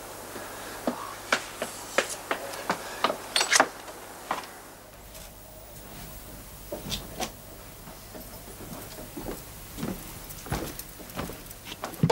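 Irregular footsteps on a hard surface, sharp and close together for the first four seconds or so, then fainter scattered knocks, with a door being handled near the end.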